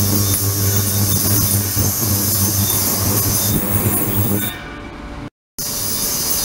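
Ultrasonic cleaning tank running with water in it: a steady low hum with a high hiss over it. The hum stops about four and a half seconds in, there is a brief gap of silence, then a similar hiss carries on.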